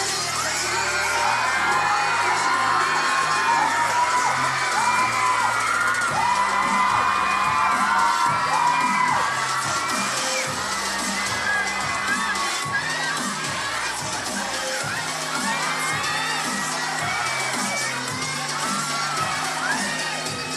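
Audience screaming and cheering in many high-pitched voices, thickest in the first half and swelling again near the end, over a dance track with a steady beat.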